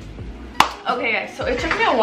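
A single sharp knock about half a second in, then a woman's voice.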